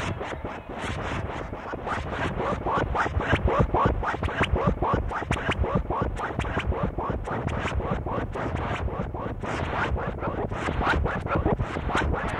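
Glitchy electronic music made on a Synclavier 9600: a sample retriggered in rapid stuttering bursts, about six a second, giving a scratching, chopped texture, played back from an old audio cassette recording.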